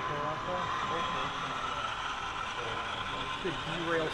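HO scale model freight train of covered hoppers running past on the layout, a steady rolling noise of wheels on the rails. People are talking in the background, with a voice near the end.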